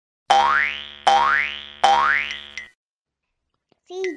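Three cartoon 'boing' sound effects in a row, each a springy upward glide in pitch that fades away, about three-quarters of a second apart. A voice starts right at the end.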